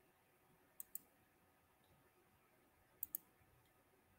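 Computer mouse clicking: two quick double clicks about two seconds apart, with near silence between them.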